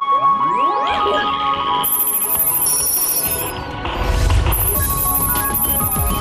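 Electronic TV channel ident music. Synth sweeps rise in pitch at the start, over bright high tones and chords, and a deep bass comes in about four seconds in.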